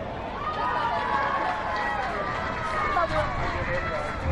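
Several indistinct voices calling out and talking over one another across an open ball field, with no clear words.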